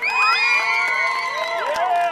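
A group of young girls cheering with high, overlapping screams held for about two seconds and fading near the end, with hand claps among them.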